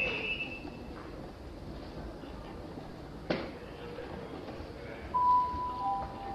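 Quiet railway platform background with a sharp click about three seconds in. Near the end a station public-address chime sounds: two steady notes, the second lower than the first. It is the alert that comes before a platform announcement.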